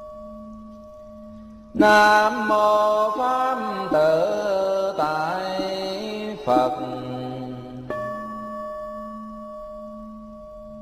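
A voice chanting a Vietnamese Buddhist invocation: one long melodic phrase from about two seconds in to six and a half, then a short second phrase. Before the chant a bell's tone is ringing and slowly fading; the bell is struck again about eight seconds in and rings on, over a low pulsing drone.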